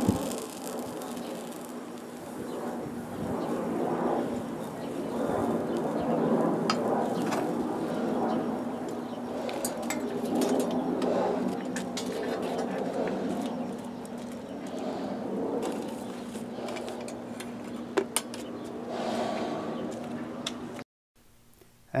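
A small air blower feeding the foundry furnace, running with a steady hum and a rush of air that swells and fades. A couple of sharp clinks come near the end.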